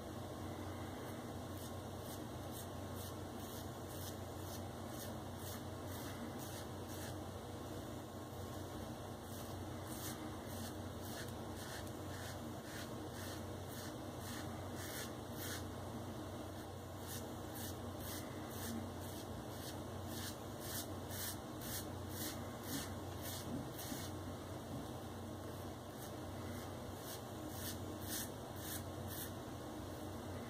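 Maggard open comb safety razor with a Feather blade scraping over a lathered scalp in short strokes, about two or three a second, in runs with brief pauses: a soft rasp with each pass as the blade cuts the stubble.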